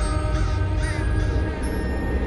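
Crows cawing, three or four short calls in the first second, over a deep, steady drone and held tones of a dark film score.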